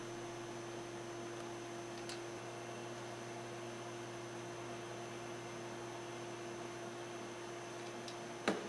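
Steady low hum with an even hiss. There is a faint click about two seconds in.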